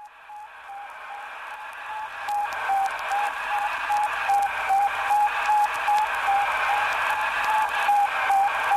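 Sputnik 1's radio beacon heard over a shortwave receiver: an even train of short, high beeps, nearly three a second, through radio hiss. It fades in over the first few seconds.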